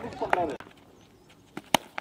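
A cricket bat striking a tennis ball: one sharp crack near the end, with a fainter tick just before it, after a brief stretch of quiet.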